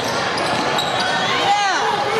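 Live indoor basketball game: a ball bouncing on a gym floor with voices in the hall, and a flurry of short squeaks about a second and a half in, typical of sneakers on hardwood.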